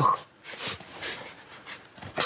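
A person sniffing the air several times in short, separate sniffs, trying to pick up a new smell.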